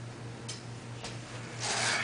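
Handling noise as a player settles onto a stool with an acoustic guitar: two faint knocks, then a short rubbing, scraping sound near the end as the guitar and clothing brush and the stool takes his weight.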